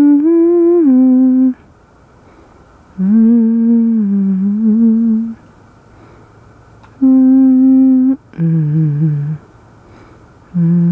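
A person humming a slow wordless tune in four held phrases of one to two seconds each, with short pauses between them.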